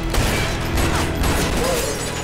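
Gunfight sound from a TV drama's soundtrack: a rapid run of sharp shots and metallic clatter, with music underneath.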